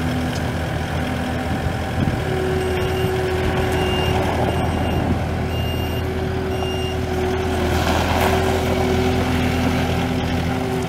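Kubota SSV65 skid steer with its four-cylinder turbo diesel engine running steadily. A steady whine comes in about two seconds in. The backup alarm beeps roughly once a second as the machine reverses.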